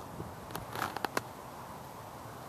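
Wind blowing: a steady, even noise with a few light clicks and taps between about half a second and just over a second in.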